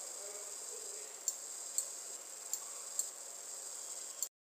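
Faint steady high-pitched hiss with about five short, sharp clicks spread through it, a computer mouse being clicked.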